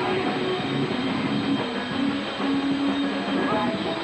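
A live rock band's stage sound: held electronic keyboard notes drone over a dense noisy wash, the notes changing every second or so.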